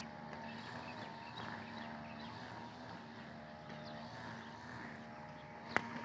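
Faint, steady machine hum holding one pitch throughout, with a single sharp click near the end.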